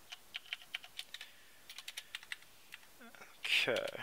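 Typing on a computer keyboard: a quick, irregular run of keystrokes over the first three seconds or so, entering a row of hash characters.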